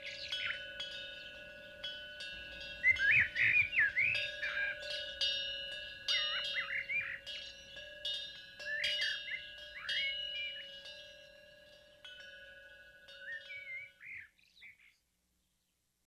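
Birds chirping in short bursts over ringing chimes and a low steady hum, fading out and stopping near the end.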